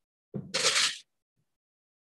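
A metal sheet pan being slid into an oven, metal scraping on the oven rack: one short scrape about half a second long, shortly after the start.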